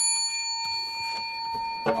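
A single metallic ding, struck once just before and ringing on as a steady bell-like tone with several high overtones, fading only slowly.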